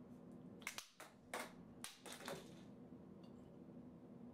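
Several short, sharp crinkling crackles of plastic being handled and squeezed in the hands, clustered from about half a second to two and a half seconds in, over a faint steady hum.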